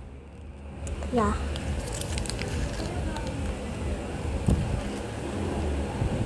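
Wrapping paper crinkling and rustling as a small present is unwrapped by hand close to the microphone, with scattered little crackles.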